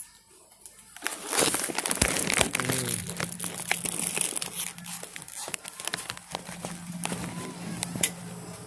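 Close rustling and crinkling handling noise with many small clicks, starting about a second in after a quiet moment. A low steady hum comes in a little later.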